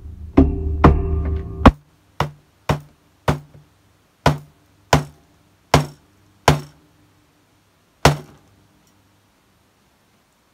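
About eleven hammer blows driving a no-sew button fastener through trouser fabric against a wooden board, struck one at a time at uneven intervals and stopping about eight seconds in. A steady low hum runs under the first three blows.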